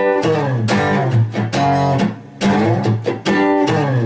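Steel-string acoustic guitar playing a blues verse groove in G: low bass notes under chord hits, struck a few times a second with a short break about halfway through.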